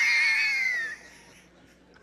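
A man's high falsetto wail into a microphone, held for about a second and sliding down at the end, a mock cry of distress. It cuts off suddenly, leaving only faint room noise.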